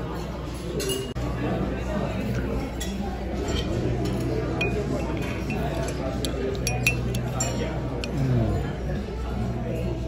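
Metal spoon clinking several times against a glass bowl while scooping food, over a murmur of dining-room chatter.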